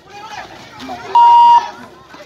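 Shot clock buzzer sounding once: a short, loud, steady high tone of about half a second, a little over a second in. It signals that the shot clock has run out, a shot clock violation.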